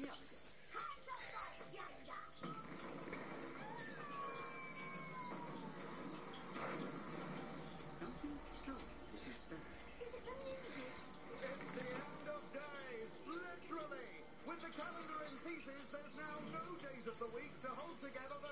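Cartoon soundtrack from a television, picked up across a small room: music and sound effects with character voices, including a few falling whistle-like glides about four to five seconds in.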